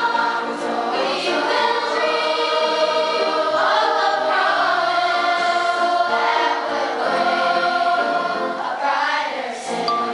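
Large school choir of children and teens singing together, with long held notes.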